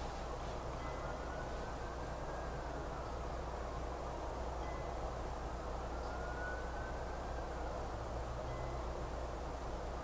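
Steady background noise with a low hum under it. Faint high tones slowly rise and fall twice.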